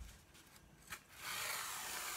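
Wool yarn being drawn through a small hole in a paper plate, rubbing against the paper: a steady rubbing hiss lasting about a second, starting just past halfway, after a single faint click.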